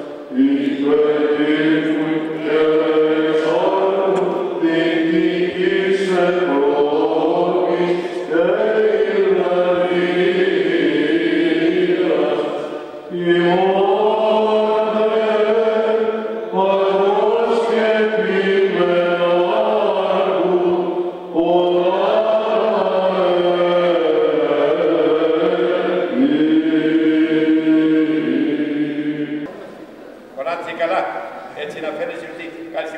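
Byzantine chant sung by a group of chanters, with melodic phrases moving over a steady held low drone (the ison). The phrases are broken by short pauses about every four seconds, and the singing ends just before the close.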